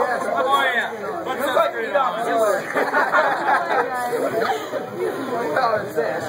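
Overlapping chatter of a group of teenage boys, several voices talking and calling out over each other at once.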